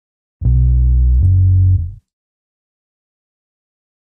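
Rickenbacker electric bass sampled in a Kontakt virtual instrument, playing two sustained low notes back to back, each under a second long, then stopping.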